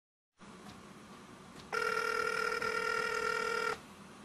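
Telephone ringback tone heard down the line while a call is placed: one steady ring about two seconds long, with faint line hiss before and after it.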